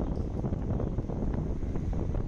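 Wind rushing over the microphone with a steady low rumble of road and engine noise, recorded from a moving motor scooter.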